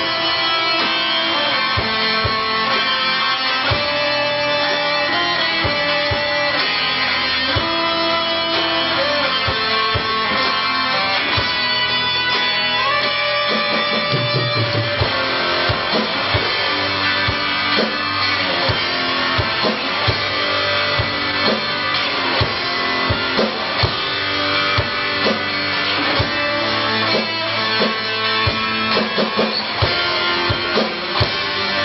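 Live amateur rock band playing a blues piece on electric guitars with a drum kit. Held lead-guitar notes in the first half give way, about halfway through, to fuller, busier playing with more frequent drum hits.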